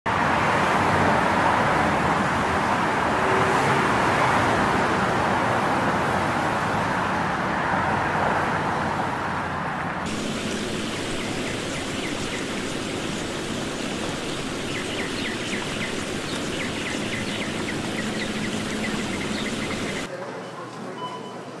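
Steady traffic-like noise of a parking garage's ambience. About halfway through it cuts off suddenly to a quieter steady hiss, with faint scattered clicks near the end.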